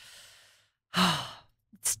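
A woman sighing: a short breathy exhale with a little voice in it about a second in, after the tail of a fading breath.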